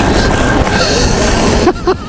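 Wind buffeting the microphone of a camera carried on a fast-moving off-road e-bike: a loud, rough rush heaviest in the low end. A brief voice breaks in near the end.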